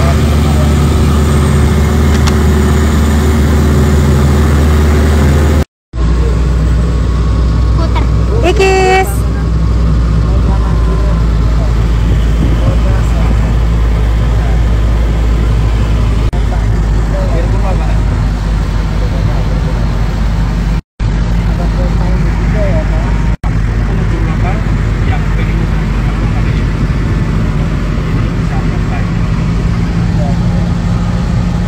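Open-top jeep's engine running steadily with road noise as it drives along. The sound drops out briefly three times.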